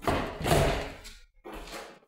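A frosted-glass bathroom door in a white frame being pushed shut, landing with a thud. A second, quieter knock follows near the end.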